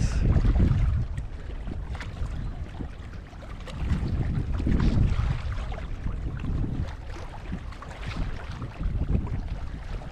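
Wind buffeting the microphone in uneven gusts, a low rumbling roar that surges at the start and again about four to five seconds in.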